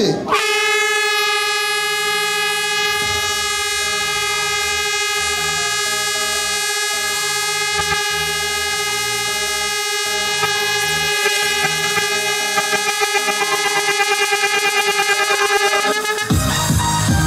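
A race starting horn blown as the start signal, one long steady blast held almost throughout, wavering in its last few seconds. Music with a beat plays faintly underneath.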